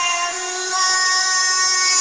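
Hard trance breakdown: a held synthesizer chord with no drums, its notes shifting to a new chord about two-thirds of a second in.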